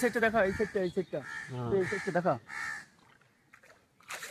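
Crows cawing in the trees, a few short harsh calls over the first three seconds, with a person's voice talking over them early on.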